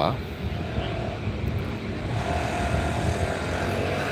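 Steady rumble of street traffic, with a faint steady hum over it during the second half.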